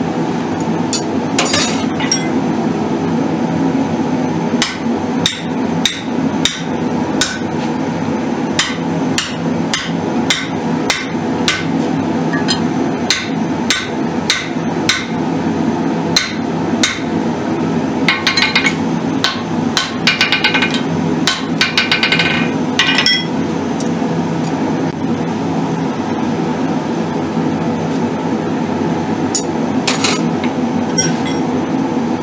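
Hand hammer striking a red-hot steel tomahawk head on an anvil, in sharp blows about once a second and then a quicker run of ringing strikes about two-thirds of the way through. A steady low drone runs underneath.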